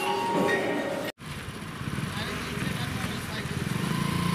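Motorcycle engine running at low speed as the bike rides closer, growing louder. It starts right after an abrupt cut, about a second in, from background voices in a tiled room.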